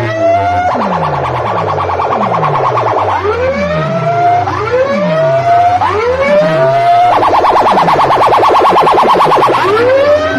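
Siren-style electronic effect played loud through a DJ sound system's horn speakers: rising whoops, each about a second long, alternate with two stretches of a rapid warbling pulse, over repeated falling low sweeps.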